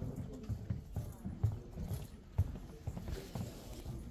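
Handling noise on the camera's microphone as a hand and a jacket sleeve press, rub and bump against it: irregular muffled thumps and rustling, with two sharper knocks about one and a half and two and a half seconds in.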